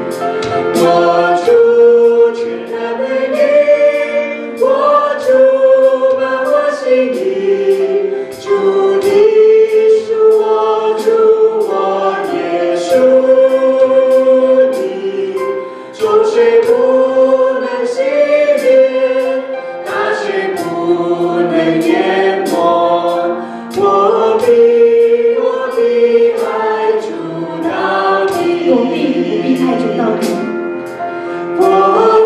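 A church worship team of women's and men's voices sings a worship song into microphones in sustained, held notes. A band accompanies them, with drums keeping a steady beat.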